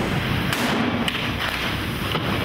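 A heavy rush of water bursting out of a large pipe, with a few dull thuds about half a second, a second and a second and a half in.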